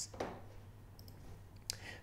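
A computer mouse click about 1.7 s in, with a fainter tick about a second in, over quiet room tone.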